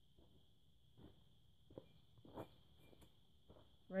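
Faint footsteps on soft dirt: a handful of irregular, soft steps coming closer, over a faint steady high hiss.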